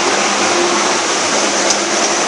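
A steady rushing noise with a faint hum from a loaded log truck running close by on the road.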